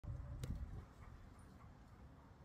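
A large black dog panting close to the microphone. The first second is louder and low-pitched, with a sharp click about half a second in.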